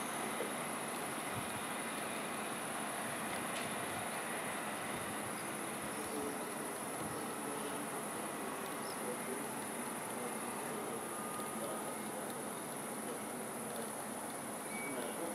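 Steady high-pitched chirring of crickets, with a faint low rumble of a regional train moving away over the points in the first half.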